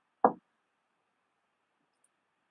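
A single short knock, about a quarter of a second in.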